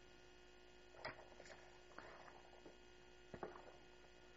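Near silence: room tone with a faint steady electrical hum and a few faint soft knocks, about a second in and again a little past three seconds.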